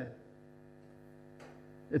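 Faint, steady electrical mains hum in the microphone and recording chain during a pause in a man's speech, with one faint tick about a second and a half in. His voice trails off at the start and comes back just at the end.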